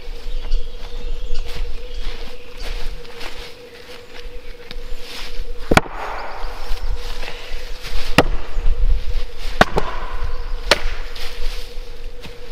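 Splitting axe striking fresh beech logs: one sharp blow about halfway through, then three more about a second apart near the end.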